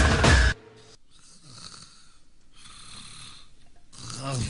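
Dance music cuts off abruptly about half a second in, followed by two long, breathy snores as the dancers lie down to sleep on the bed sheet.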